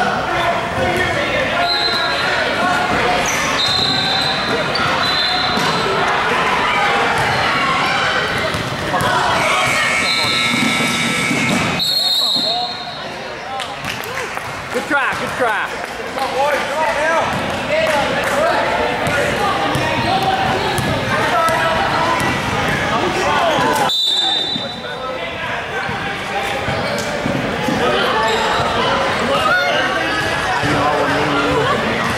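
Basketball game sound in an echoing gymnasium: a basketball bouncing on the hardwood court, short high squeaks, and unclear shouts and chatter from players and spectators. The sound breaks off abruptly twice, about a third and two thirds of the way through.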